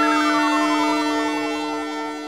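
Closing synthesizer music: a held chord with a pulsing synth tone gliding steadily down in pitch through it, the whole beginning to fade near the end.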